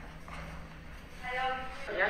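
Faint voices, with one drawn-out voiced sound that holds a steady pitch for about half a second, starting just over a second in.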